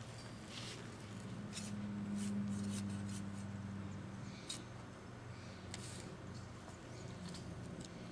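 A steel garden fork digging into dry garden soil, giving short irregular scrapes and crunches as the tines go in and are levered. A steady low hum runs underneath.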